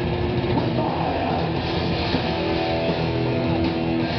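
Live blackened thrash metal band playing at full tilt: heavily distorted electric guitars, bass and drums through a club PA, dense and loud, with a few held guitar notes over the riffing.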